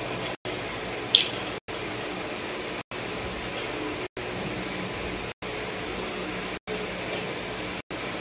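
Steady room hiss with a faint low hum, broken by short gaps of silence about every second and a quarter. One sharp click about a second in, from small rubber bands being picked out of a compartmented plastic tray.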